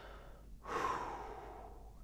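A man breathing audibly, one long, soft breath beginning about half a second in and fading over about a second.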